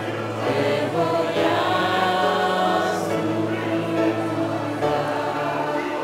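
Mixed choir of men and women singing a hymn in Romanian, in long sustained notes.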